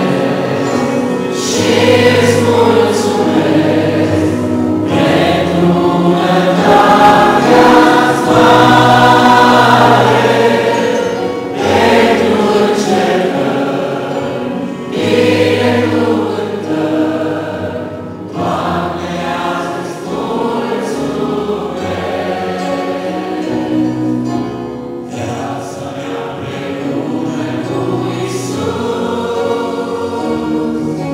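Mixed choir singing a hymn in Romanian, accompanied by an electric keyboard with sustained low notes.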